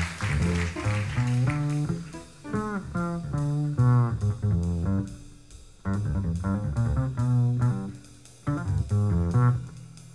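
Double bass solo in a live jazz recording: plucked phrases of low notes broken by short pauses, with the drums keeping time softly behind it. Applause from the preceding solo dies away in the first moment.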